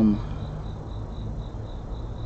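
A cricket chirping in a faint, steady high-pitched pulse, about four or five chirps a second, over low background rumble.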